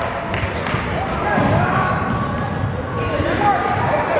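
Basketball being dribbled on a hardwood gym floor, repeated sharp bounces echoing in a large hall over the voices of players and onlookers.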